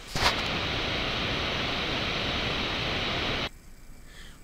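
A steady, even hiss like static that cuts off abruptly about three and a half seconds in.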